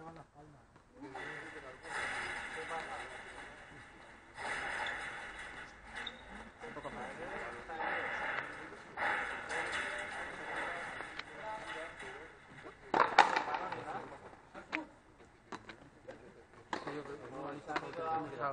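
Indistinct voices talking on a frontenis court, with a few sharp knocks of the ball off racket and wall. The loudest, a hard smack with a short ring after it, comes about two-thirds of the way through.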